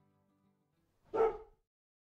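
A single short dog bark, a little over a second in.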